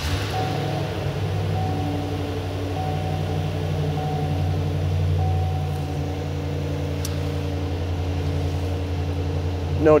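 A 6.0-litre V8 gas engine in a Chevrolet Silverado 2500 catches and runs at idle, heard from inside the cab as a steady low hum. A single click sounds about seven seconds in.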